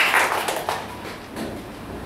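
Congregation applause fading out over about the first second, leaving quieter room sound.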